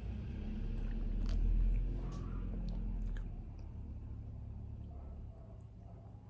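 Mouth and swallowing sounds of a person sipping soda from a can, with a few faint ticks. A low rumble swells about a second and a half in and then fades.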